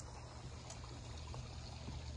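Quiet, steady faint water sound with a low background hum and a few faint ticks.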